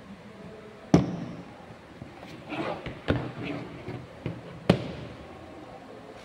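Latches of a hard plastic carrying case snapped open, sharp clicks about a second in and again around three and five seconds, with the case and its lid handled in between as it is opened.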